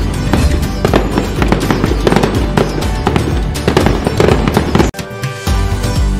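Fireworks sound effect: dense crackling and popping over music, cut off suddenly about five seconds in, after which the music comes back on its own.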